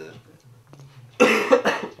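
A person coughs loudly about a second in, after a faint murmur of voices.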